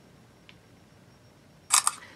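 Smartphone camera shutter sound near the end, a quick double click, after a stretch of faint room tone.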